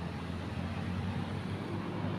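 A steady low engine hum, like a motor vehicle running.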